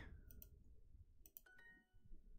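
A computer mouse clicks, then about one and a half seconds in comes Duolingo's faint correct-answer chime, a short few-note ding confirming the right answer.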